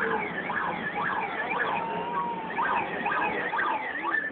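A siren sounding in a fast yelp, its pitch sweeping rapidly up and down over and over, with one short held note a little after the middle.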